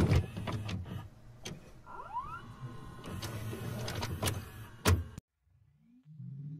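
Sound-effect intro of a rap track: bursts of noise with sharp clicks and a short rising whine about two seconds in, stopping abruptly a little after five seconds.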